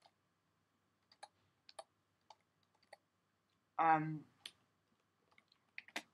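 Faint, irregular keystrokes on a computer keyboard: about a dozen scattered taps as a line of CSS is typed.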